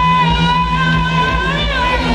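Live rock band playing loud through a PA, recorded from within the audience. A long note is held over a steady low bass note and wavers about one and a half seconds in.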